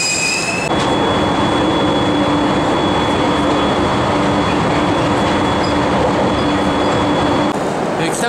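A JR East 701 series electric train running, heard from on board: a steady rumble of wheels and running gear with a steady low hum. It opens with a brief high-pitched squeal, and the sound cuts off abruptly near the end.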